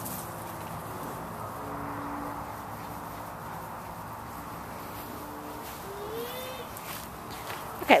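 Quiet, steady outdoor background hum and hiss, with a faint short rising call about six seconds in.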